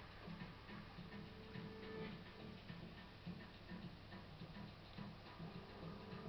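Soft, fairly regular ticking over quiet background music with a few faint held tones.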